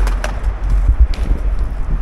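Wind buffeting the microphone in gusts, a heavy uneven rumble, with a few short sharp clicks about a quarter of a second and a second in.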